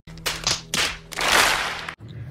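A crowd clapping: a few separate claps, then a denser burst of applause in the second half.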